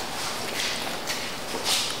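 A person drinking cola from a plastic cup: swallowing, with two short breathy hisses, one about half a second in and one near the end.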